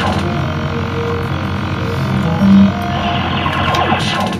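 Fruit machine arcade background: a steady electrical hum under short held electronic tones at several pitches, with one louder low note about two and a half seconds in.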